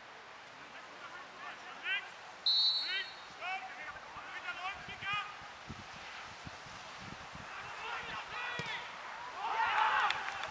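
Referee's whistle, one short blast about two and a half seconds in, signalling the free kick to be taken, among scattered shouts from players on the pitch. Near the end a louder burst of overlapping shouts and cheers rises as the ball goes in for a goal.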